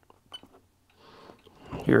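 A few faint clicks from the keypad of a RigExpert AA-230 ZOOM antenna analyzer as its SWR sweep is started, then a word spoken near the end.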